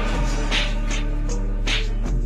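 Instrumental music with no vocals: sustained chords over a steady low bass note, with short hissy cymbal-like hits every half second or so.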